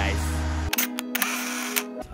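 Camera-shutter sound effect used as an edit transition: a quick series of shutter clicks and a brief noisy burst over a steady held music tone, starting abruptly well under a second in.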